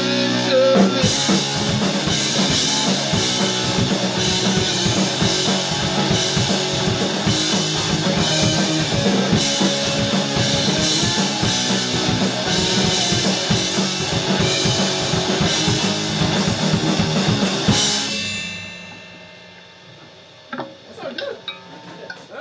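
Rock trio playing live: a hollow-body electric guitar, an electric bass and a drum kit with a steady beat. The song ends about 18 seconds in, the last chord dying away over a couple of seconds.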